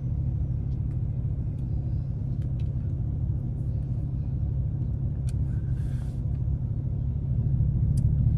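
Steady low rumble of a work truck's engine and road noise heard inside the cab, with a brief hiss about six seconds in.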